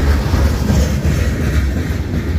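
Freight cars of a long manifest train rolling past close by: a loud, steady low rumble of steel wheels on rail.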